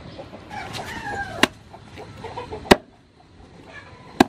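A cleaver chopping raw chicken on a round wooden chopping block: two sharp chops, the first about a second and a half in and the second about a second and a quarter later. Just before the first chop, a bird calls with a drawn-out, slightly falling pitch.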